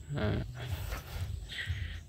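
Faint rustling and handling noise as a chainsaw is picked up by its handle and turned on the grass, after a brief spoken 'à'. The saw's engine is not running.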